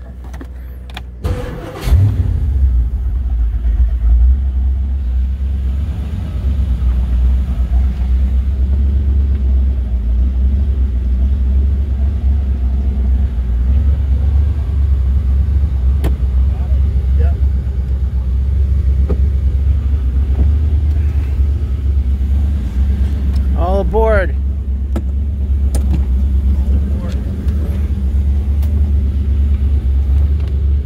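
The 1970 Chris-Craft XK22's inboard V8 is cranked by its starter and catches about two seconds in, then idles with a steady low rumble.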